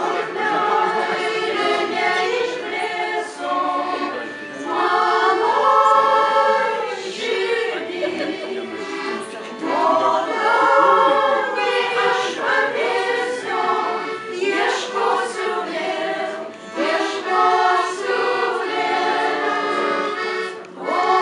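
Women's vocal ensemble singing a Lithuanian romance in harmony, accompanied by piano accordion.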